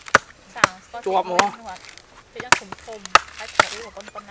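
Cleaver chopping into coconut husk: about five sharp, irregularly spaced strikes.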